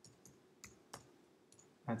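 Computer keyboard keys clicking faintly as a name is typed: about five separate key presses over the first second and a half.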